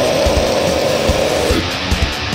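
Death metal cover: a held, screamed vocal note over distorted electric guitar and drums. The vocal drops out about one and a half seconds in, leaving the guitar riff and drums.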